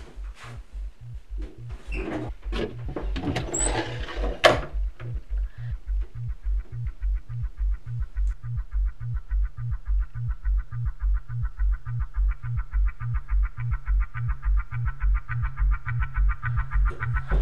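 Suspense film score: a pulsing low bass beat, about two and a half beats a second, building in loudness, joined about six seconds in by a fast pulsing higher tone. Over the first few seconds come several short noises, the loudest a sharp knock about four and a half seconds in.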